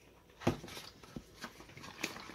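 Handling noise from a wet plastic hydration bladder and its drinking tube moved about in a sink: one sharp knock about half a second in, then a few lighter clicks.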